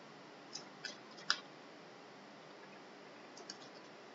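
Computer mouse button clicks, short and sharp: three within the first second and a half, then a quick pair about three and a half seconds in, over faint room hiss.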